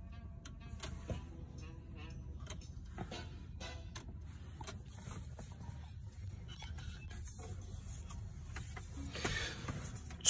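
Faint cartoon soundtrack, music with sound effects, playing through a Tesla Model 3's cabin speakers, with scattered sharp clicks over a low steady hum.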